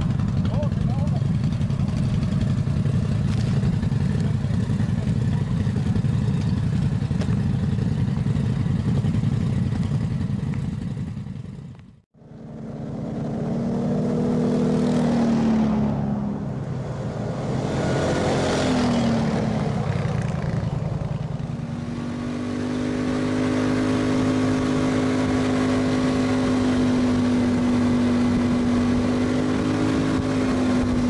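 ATV engines running. A steady engine sound fades out at a cut about twelve seconds in. Engine notes then rise and fall in pitch as the quads pass, and over the last third one engine holds a steady hum at constant speed.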